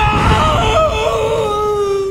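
A voice crying "¡Ay, mamá!", the last vowel drawn out into a long, high, wavering wail that breaks off near the end, over a low rumble.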